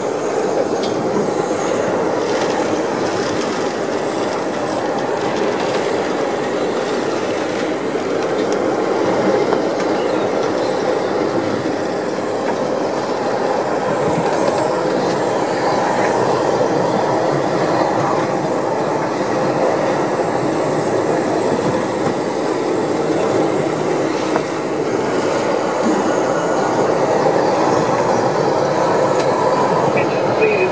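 Hurricane Odile's wind heard from inside a boat's cabin: a steady, heavy rush of noise that swells a little about a third of the way in and dips briefly near the end.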